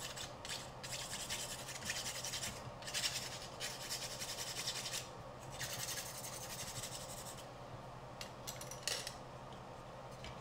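Nail file rasping in quick back-and-forth strokes against the edge of a carbon fiber drone arm, beveling the delaminated edges smooth. The filing stops briefly a few times, mostly ends about seven seconds in, and gives a few last strokes near nine seconds.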